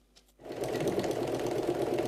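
Near silence, then a sewing machine starts about half a second in and runs steadily at speed.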